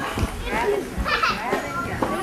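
Many children's voices chattering and calling out over one another, with a couple of dull thumps.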